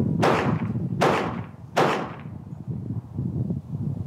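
Three gunshots fired at a steady pace, about 0.8 s apart in the first two seconds, each trailing off in a short echo, followed by a low rumble.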